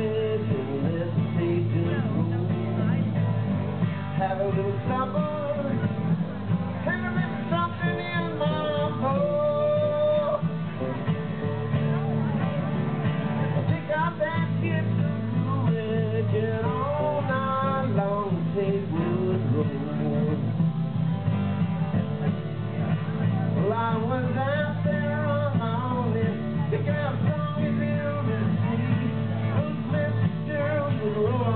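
A small live band playing a blues song: steel-string acoustic guitar and electric bass, with a man singing lines at intervals over the steady accompaniment.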